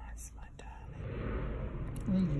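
Soft whispering, faint at first and growing louder about a second in.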